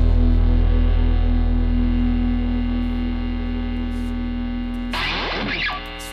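A band's final chord held on distorted electric guitar, ringing and slowly fading. About five seconds in, a brief noisy scrape with falling pitch cuts across it, and the chord keeps fading.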